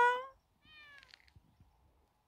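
Kitten meowing: the end of a loud meow, then a fainter, shorter meow about half a second later.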